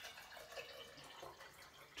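Water poured from a glass measuring cup into a glass jar: a faint, steady pour.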